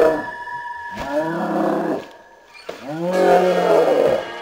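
Hulk-style roars: a deep voice bellowing in drawn-out roars that rise and fall in pitch. The end of one roar comes at the start, another lasts about a second, and a last one follows a brief quiet gap near the end.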